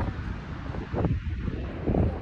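Wind buffeting a phone's microphone on an open beach: an uneven low rumble that rises and falls.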